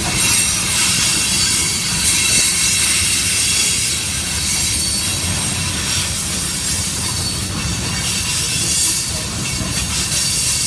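Freight train cars, covered hoppers then tank cars, rolling past close by: a loud, steady rumble and hiss of steel wheels on the rails.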